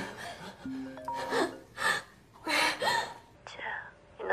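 A woman gasping and breathing hard in distress, in several short breaths, over soft background music, with a short click near the end.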